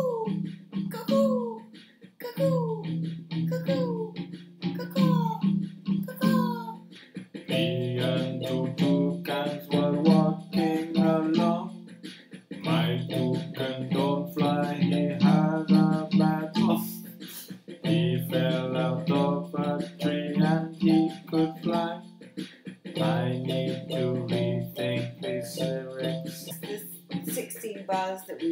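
Yamaha electronic keyboard played by two people: for the first seven seconds a bird-like falling note repeats about once a second, then chords over a low bass come in, repeated in phrases of about five seconds with short breaks between them.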